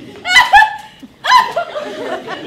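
Loud, high-pitched laughter from one voice in two bursts about a second apart, each falling in pitch, followed by softer scattered laughter.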